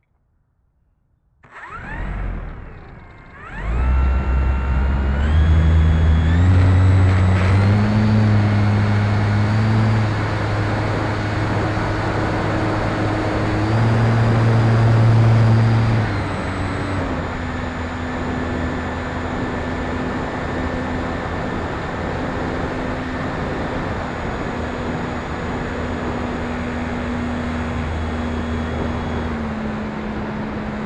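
Brushless electric motor and propeller of an E-flite Turbo Timber RC plane, heard from the plane itself. After about a second and a half of near silence it starts and winds up in several steps of pitch for the takeoff, then runs at high power. About sixteen seconds in it eases back to a steady, slightly lower cruise over a constant rushing noise.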